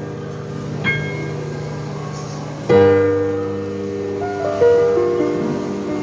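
Digital piano playing a slow, sustained passage: a single high note about a second in, then a full chord struck just under halfway through, the loudest moment, and another about two seconds later, each left to ring and fade.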